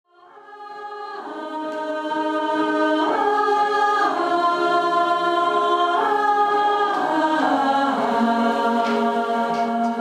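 Mixed amateur choir singing long held chords in several parts, fading in over the first couple of seconds, the chords changing every second or two.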